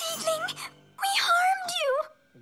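A cartoon character's high voice wailing in dismay over background music: a short cry, then a longer wavering wail that falls in pitch at the end.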